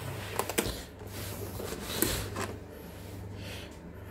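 Hard plastic seedling tray being handled and set down on a table: a few light clicks and knocks in the first second and another click about two seconds in, over a steady low hum.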